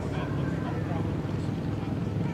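A steady low hum with faint distant voices over it.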